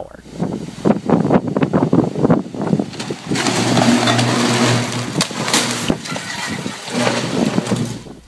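Downed power line arcing. After a run of sharp snaps and crackles, a loud electrical buzz with a crackling hiss starts about three seconds in. It cuts off near the end as the circuit breaker trips.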